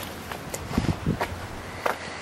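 A few soft footsteps on pavement with scattered light clicks, the ATV's engine not running.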